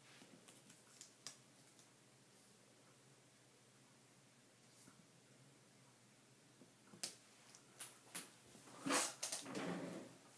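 Paper scrapbook pieces being handled and pressed onto a layout on a cutting mat: a few faint taps in the first second, a quiet stretch, then several sharp taps and a short louder rustle in the last three seconds.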